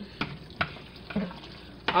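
A macaroni and cheese mixture with eggs, cheese and evaporated milk being stirred: a steady, soft stirring noise with a few light knocks.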